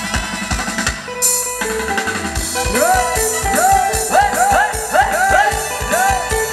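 Live dance-band music with a fast, steady kick-drum beat and tambourine. From about halfway in, a lead line plays short notes that bend up and fall back, over and over. A man's voice says a few words briefly about three seconds in.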